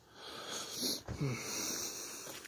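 A man breathing hard and sniffing close to the microphone, with a short low vocal sound about a second in.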